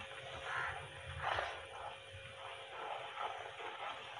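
Wooden spatula stirring thick, bubbling pickle masala in a nonstick pan, with soft, irregular scrapes and sizzles. A faint steady hum runs underneath.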